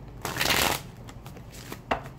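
A deck of tarot cards being shuffled by hand: a brief rush of cards riffling together, then a short sharp tap near the end.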